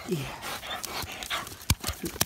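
English setter panting, winded from swimming retrieves. A single sharp click comes near the end.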